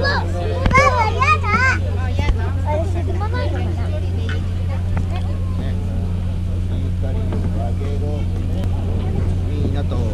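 Steady low hum of the Hakone sightseeing pirate ship's engine running, under passengers' chatter, with a high voice rising and falling in the first couple of seconds.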